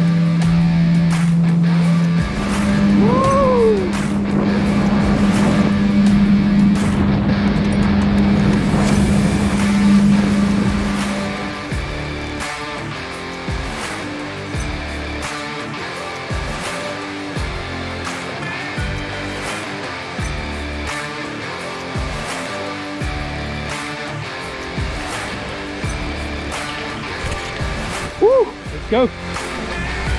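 Yamaha FX HO jet ski running at speed across open water: a steady engine drone that steps up slightly in pitch about two seconds in. After about twelve seconds it gives way to background music.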